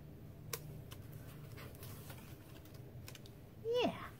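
Faint scattered taps and clicks of cardstock layers being handled and pressed down on a craft mat.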